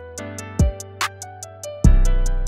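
Instrumental trap-style hip-hop beat: a plucked melody over fast, even hi-hats, with a sharp clap-like hit about halfway and a deep 808 bass note coming in near the end.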